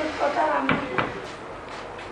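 A voice speaking briefly, then two sharp knocks about a third of a second apart, near the middle: a hand tool knocking against a cast bronze piece.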